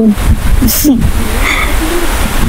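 Wind buffeting the microphone, a loud, uneven low rumble, with a few brief wordless voice sounds and a short hiss just before one second in.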